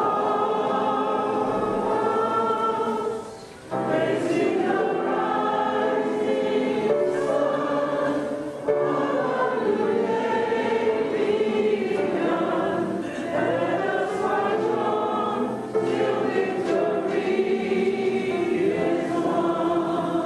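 Youth choir singing a gospel song in long held phrases, accompanied on an upright piano, with a short break between phrases about three and a half seconds in.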